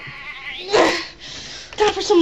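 A person's short, loud vocal outburst, a cry or yell, just under a second in. Speech starts near the end.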